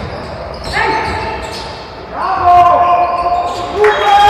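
Basketball bouncing on a hardwood gym floor among players' voices in a reverberant sports hall, with a loud drawn-out shout from about two seconds in that lasts over a second.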